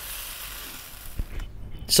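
Soft sizzle of a stir-fry in a wok with the heat just turned off, as a spatula stirs it, with one low knock a little over a second in. The sound then stops abruptly about a second and a half in.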